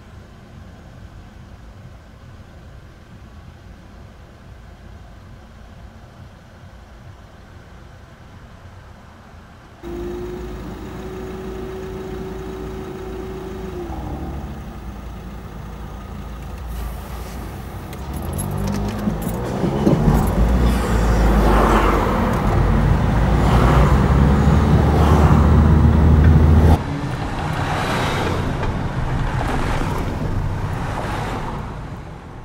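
Road vehicles' engines at a level crossing, quiet at first, then building close by as the queued cars and van move off. A steady tone slides down in pitch about a dozen seconds in, and the loudest engine sound stops suddenly near the end, leaving a quieter rumble.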